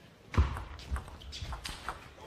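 Table tennis ball being struck by rackets and bouncing on the table in a fast rally: a quick run of sharp clicks, the first about half a second in and the loudest.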